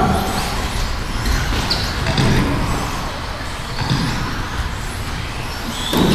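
1/10-scale brushless electric RC buggies racing, their motors giving short whines that rise and fall as they accelerate and brake, with voices in the background.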